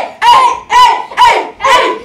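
Boys shouting a rhythmic chant together, a run of short high-pitched shouts about two a second.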